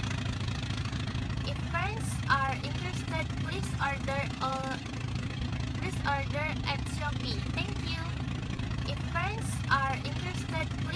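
A young woman speaking, over a steady low drone of an idling engine.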